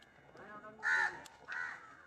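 A crow cawing faintly, three short caws about half a second apart.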